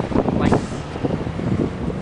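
Wind buffeting the camera microphone as a low rumble, with a brief rush of noise about half a second in; a faint steady low hum starts near the end.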